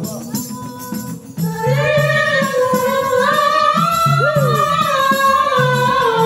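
Maulid qasida singing over a steady hand-drum rhythm. The singing drops out briefly at the start and comes back about one and a half seconds in with long, held, winding notes.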